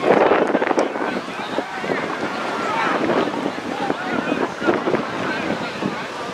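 Wind buffeting the microphone over many distant voices of players and spectators calling and talking across an open field, with a louder gust right at the start.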